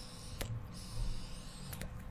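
A draw on a 10 Motives disposable e-cigarette: a quiet, airy hiss of air pulled through it with a thin high whistle, and a small click about half a second in.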